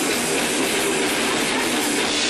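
Rock band playing loud, distorted electric guitars and drums, heard through a camcorder microphone as a dense, steady wash of sound with little bass.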